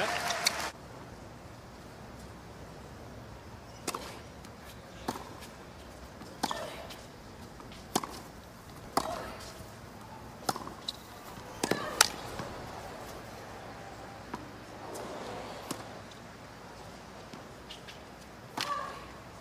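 Tennis rally on a hard court: a string of sharp racket-on-ball strikes, about ten, roughly a second to a second and a half apart, the loudest about two-thirds of the way through.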